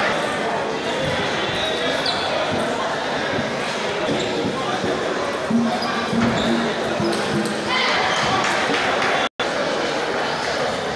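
Table tennis ball clicking off bats and the table during rallies, over steady crowd chatter in a large hall. The audio cuts out for an instant near the end.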